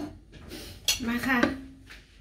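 Kitchen crockery being handled: one sharp clink just before the middle, as a plate of rice is brought up to the frying pan.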